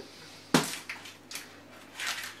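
Metal springform cake pan being handled as it is opened around a baked sponge cake. There is one sharp click about half a second in, then a few faint clicks and rustles.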